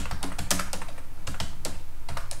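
Computer keyboard typing: a run of separate key clicks, several a second, at an uneven pace.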